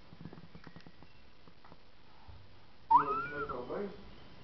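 A small child's high-pitched squealing cry: one wavering, gliding vocal sound of just under a second, starting about three seconds in, after a few faint clicks.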